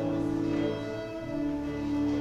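Church organ playing sustained chords, the held notes moving to new pitches every second or so.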